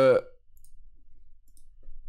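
A man's drawn-out hesitation 'euh' trails off, then quiet room tone with a low hum and a couple of faint, short clicks near the end.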